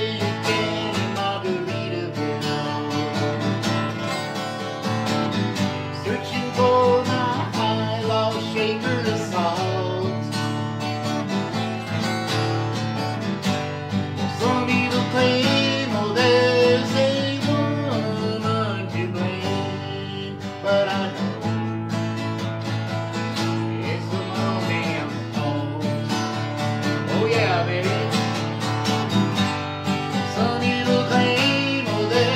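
A steel-string acoustic guitar strummed steadily, with a man singing along to it.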